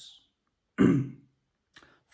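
A man clears his throat once, briefly, about a second in, with a faint mouth click near the end.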